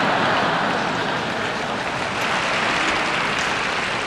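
Audience applauding: a steady wash of clapping from a large hall.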